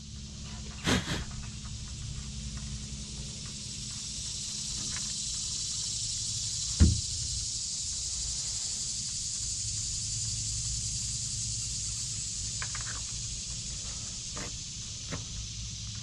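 Steady high-pitched outdoor background hiss with a low hum beneath, and a few light taps and knocks from handling at the drilled hole, the loudest about seven seconds in.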